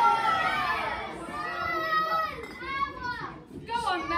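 Children in an audience calling and shouting out together, many high voices overlapping, louder in the first half.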